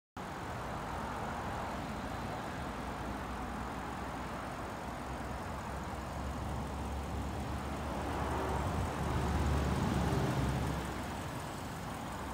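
Audi RS7 Performance's twin-turbo V8 idling with a steady low rumble that swells louder for a couple of seconds near the end.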